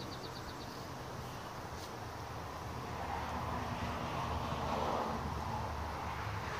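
Faint outdoor background rumble that slowly swells to a peak about five seconds in, then eases. A quick run of about eight high chirps comes at the very start.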